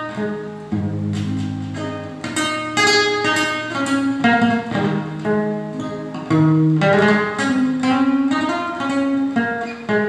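Steel-string acoustic guitar playing an instrumental introduction: a run of plucked notes and chords over low bass notes.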